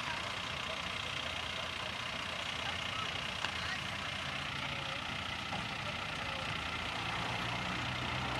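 A fire engine's motor idling steadily while it supplies the charged hose lines, a low even hum under a steady hiss.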